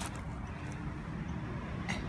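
Steady low background rumble, with no distinct events until a short click near the end.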